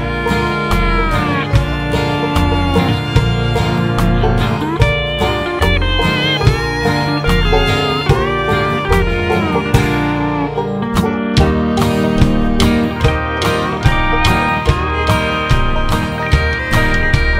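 Instrumental break in an uptempo country band recording: acoustic guitar and a fiddle carrying sliding melody lines over bass and a steady drum beat, with no singing.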